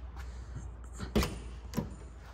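Car door on a 1973 Mercury Cougar being opened: two sharp latch clunks about half a second apart, the first the louder, over a steady low hum.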